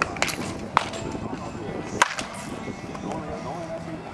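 Batting practice in a netted cage: a baseball bat hitting a pitched ball with a sharp crack about two seconds in, after smaller knocks at the start and just under a second in. Faint voices near the end.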